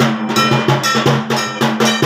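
Durga puja drumming: dhak drum beats with a ringing bell-metal gong (kansar) struck in a steady rhythm, about four strokes a second.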